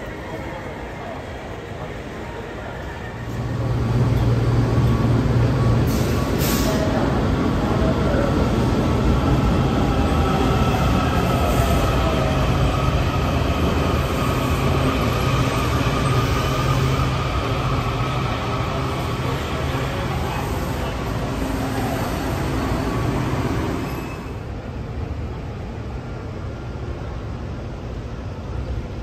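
Subway train running alongside a station platform: a loud rumble with a steady low hum that starts about three seconds in and drops away about four seconds before the end, with a faint gliding whine in the middle.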